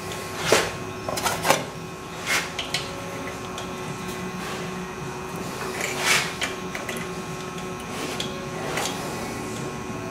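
Short handling clicks and scrapes, about six in all, as thin wire is wrapped and twisted around a door coil spring held compressed in a bench vise, over a steady background hum.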